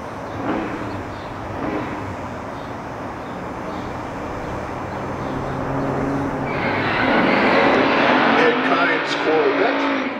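Big-block V8 drag cars running at the starting line, then from about six and a half seconds in one revs hard with its rear tyres spinning in a burnout, much louder.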